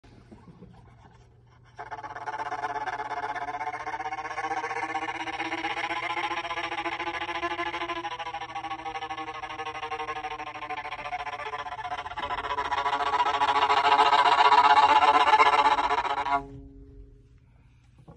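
Bowed violin built into a honeycomb-covered beehive frame (the beehiveolin), playing one long sustained tone that starts about two seconds in, grows louder near the end and stops sharply.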